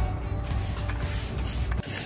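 Long-handled stiff-bristle brush scrubbing a wet outdoor patio mat, a steady scratchy scrubbing that stops just before the end.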